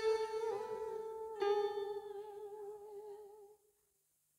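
The closing of a song sung by a woman over a karaoke backing track: a long final note held with a slight waver, with a plucked guitar-like chord striking about one and a half seconds in. It all fades and stops about three and a half seconds in.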